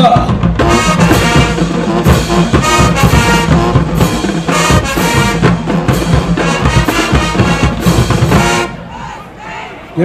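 Marching band drumline playing a fast, dense cadence on marching snare and bass drums, with brass horns sounding chords over it. The music stops abruptly near the end.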